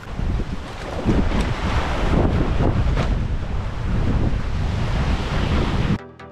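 Wind buffeting the microphone, a rough low rumble that rises and falls, with surf washing on the beach underneath.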